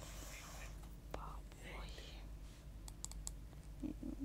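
Quiet studio gap with a steady low hum, faint whispered voice sounds in the first two seconds, and a few light clicks about three seconds in.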